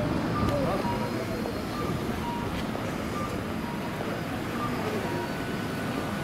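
Busy town street ambience heard while walking in a crowd: a steady hum of passing traffic and people, with short electronic beeps repeating about twice a second.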